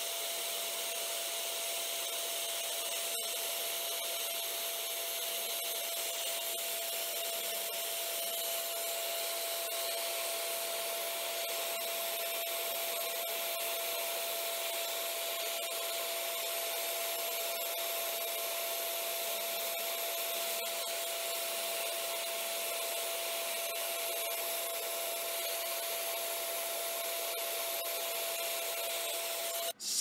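Sandpaper held against an olivewood seam-ripper blank spinning on a wood lathe: a steady rubbing hiss over a steady tone. It cuts off suddenly near the end.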